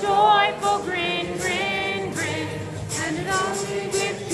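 Several voices singing a melody together over music, karaoke-style, with held and gliding notes.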